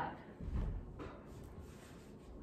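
A dull thud about half a second in, then a faint tap: a foot coming down on the floor after a kick.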